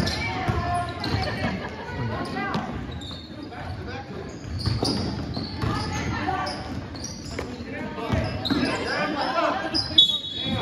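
Basketball game in play on a gym's hardwood court: the ball bouncing on the floor amid indistinct shouts and chatter from players and spectators, echoing in the large hall.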